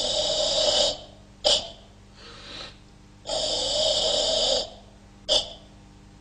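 Forceful karate ibuki breathing during a Sanchin-style kata: two long, hissing breaths of about a second each, each followed by a short, sharp breath, with a softer breath between them.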